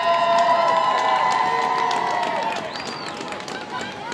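Marching band holding a loud sustained chord that falls away about two and a half seconds in, with short sharp percussion ticks running through it.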